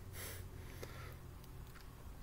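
A faint sniff through the nose in a pause between sentences, with a small click a little later, over a low steady room hum.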